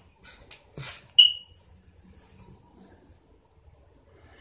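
Two brief rustles of hands moving close to the microphone, then a single short, high-pitched electronic beep about a second in that fades quickly.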